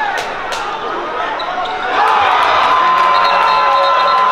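A basketball being dribbled on a hardwood court, with short sharp bounces over arena crowd noise and voices. About two seconds in, a louder steady held tone comes in and lasts to the end.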